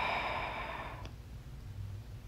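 A woman's long sigh: a breathy exhale that fades away about a second in.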